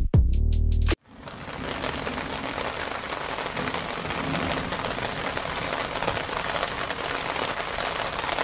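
Steady rain falling, fading in just after a musical tone cuts off abruptly about a second in.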